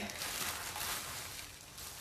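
Faint rustling of a bubble-wrap bag being handled.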